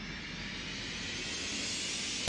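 Rising whoosh transition effect: a rushing hiss that swells steadily louder and brighter.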